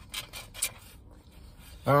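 A few short, soft clicks and scrapes of someone eating ice cream with a plastic spoon from a foam container, in the first half-second or so. Just before the end a woman's voice says a drawn-out 'um'.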